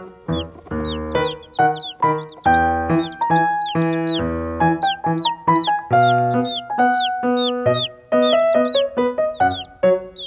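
Background music, with baby chicks peeping over it in short, high, falling chirps, about two a second.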